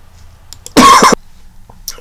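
A person coughs once, sharply and briefly, about a second in.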